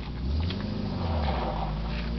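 Vintage car's engine running low as the car drives slowly away, its pitch rising and then falling back about a second in.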